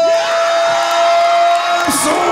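Ring announcer's loud, drawn-out call of the winner's name, one long held note that breaks off near the end, over a cheering arena crowd.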